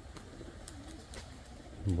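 Faint cooing of domestic pigeons: a few short, low coos, with scattered light clicks.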